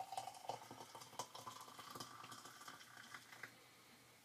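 Faint pouring of just-boiled water from a stainless-steel kettle into a ceramic mug, with light scattered ticks. It dies away about three and a half seconds in.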